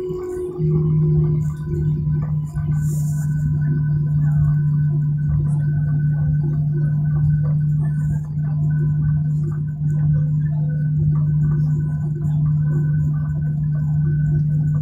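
Jet airliner's engines heard inside the cabin while taxiing: a steady, loud low hum over a rumble, with a fainter high whine. The hum swells about half a second in.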